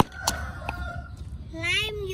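A wooden pestle knocks into a clay mortar of pounded chilies and garlic at the start, a couple of strikes, then the pounding pauses. About a second and a half in, a rooster crows: one pitched call, rising slightly and held for about a second.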